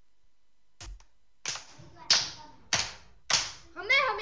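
A single low thump through the public-address microphone, then four sharp taps about 0.6 s apart, like a microphone being tapped or knocked. A child's voice starts near the end.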